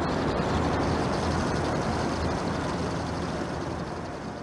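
Recon Scout XT throwable reconnaissance robot driving over asphalt: a steady whir of its small drive motors and its wheels rolling on the gritty surface, easing off slightly near the end as it moves away.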